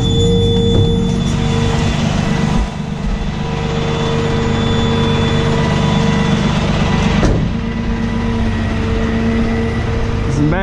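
Freightliner M2 rollback tow truck's diesel engine running, heard from inside the cab while driving, with a steady whine over the engine note. The level dips briefly about two and a half seconds in, and there is a single sharp click about seven seconds in.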